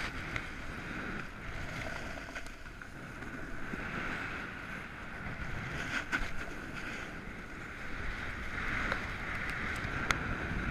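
Skis sliding over packed snow, a steady scraping hiss, with wind on the microphone and a couple of sharp clicks about six seconds in and near the end.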